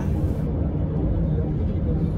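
Steady low road and engine rumble heard from inside a car's cabin while it cruises on a freeway.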